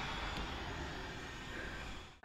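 Faint, steady rumble of a parked box truck's engine idling, muffled through a closed window.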